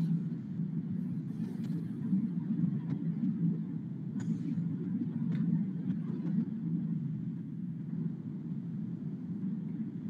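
Steady low background rumble picked up by an open call microphone, with a few faint clicks in the middle.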